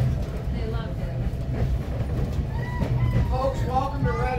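Steady low rumble of a moving passenger railway coach heard from inside the car, with people talking over it.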